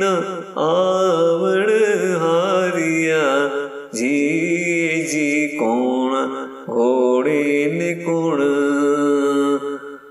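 A voice singing a ginan, an Ismaili devotional hymn, in a slow chanted melody, drawing out a long vowel in sustained, wavering phrases with short breaks between them.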